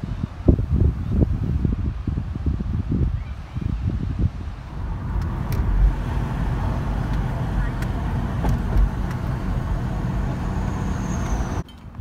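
Irregular low buffeting for the first few seconds, then a car's steady road and engine rumble heard from inside the cabin while driving, cut off suddenly near the end.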